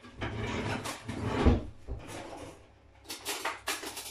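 Kitchen handling sounds: rustling and knocking, with a heavy low thump about a second and a half in, then a few sharp clicks near the end, like a drawer or cupboard being worked.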